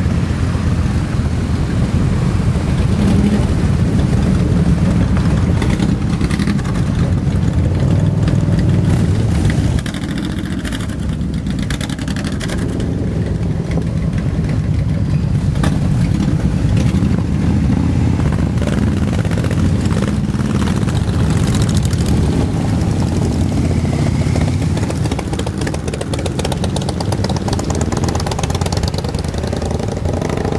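A large group of motorcycles running and riding off one after another: a dense, steady mix of engine sound with bikes passing close by. The level drops a step about ten seconds in.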